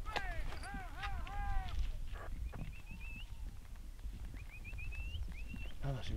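Hunting dogs from the pack (podencos) yelping and baying in the distance, a quick run of short rising-and-falling cries in the first two seconds, followed by a few thinner, higher rising calls. Wind rumbles on the microphone underneath.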